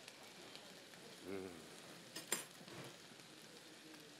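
A man's short, closed-mouth "mm" while chewing a bite of steak, about a second in, over a faint steady hiss like food sizzling in a pan. There is one small click a little after the middle.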